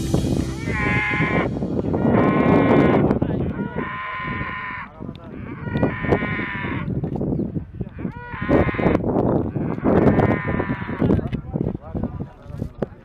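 Livestock calling: six drawn-out, bleat-like calls about every two seconds, over a rough low noise.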